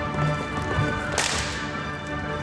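Orchestral music accompanying a stage ballet. About a second in comes a single sharp crack with a short, bright ringing tail.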